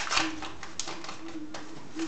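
Wrapping on a trading card package crinkling and rustling as it is pulled open by hand, in a few sharp bursts, with a faint steady low tone underneath.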